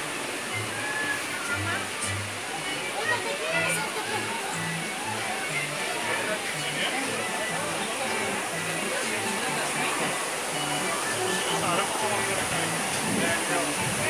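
Steady rush of falling water, with background music playing under it and faint voices of other visitors.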